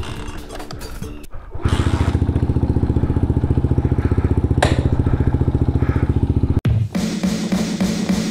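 Small single-cylinder motorcycle engine of a Chinese Honda Monkey replica running with its oil freshly changed. It gets louder from about a second and a half in, with a fast, even putter, and stops abruptly near the end, where background music comes in.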